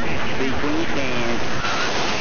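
Voice received over CB radio on 27.285 MHz, words coming through a steady hiss of static. The static grows brighter near the end.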